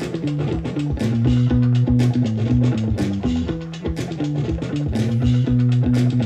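An instrumental track with guitar, bass and drums played from a phone over Bluetooth through a Gemini GPSS-650 portable PA speaker, a 200-watt unit with a 6.5-inch woofer and a horn tweeter.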